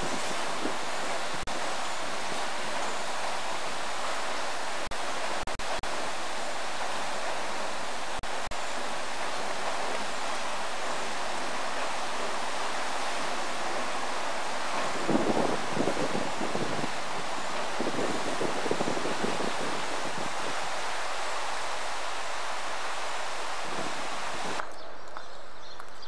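Water rushing steadily through the sluice gates of a weir, with wind buffeting the microphone for a few seconds past the middle.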